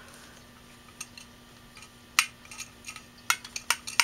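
Small metal parts of a dismantled Maxtor DiamondMax 9 hard drive clicking and clinking as the head assembly is handled by hand: a few sharp ticks, coming closer together in the last second and a half.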